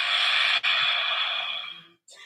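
A woman's long, forceful exhale into a standing forward bend. It breaks off for a moment about half a second in and fades out near the end.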